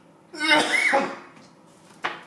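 A man coughs once into his hand, in a single voiced cough a little under a second long, starting about a third of a second in.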